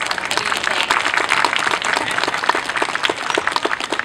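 Audience applauding: many hands clapping together, dense and steady.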